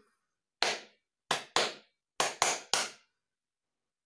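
Hand claps beating out a rhythm pattern: one clap, a pause, two quick claps, a pause, then three quick claps, six in all.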